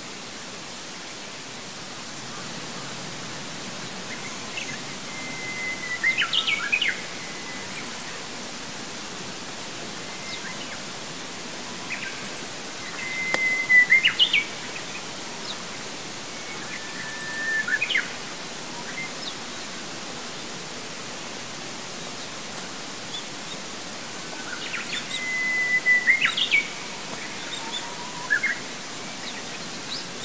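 A songbird singing four separate phrases, each a held whistle that breaks into a quick flourish, over a steady background hiss.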